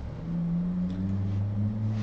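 Low, steady sustained tones, a drone of two or three notes, begin just after the start; the upper note steps up in pitch about three quarters of the way through, like a low musical pad.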